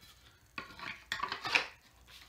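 A few light scrapes and clicks of a steel axe head being handled, starting about half a second in and stopping near the end.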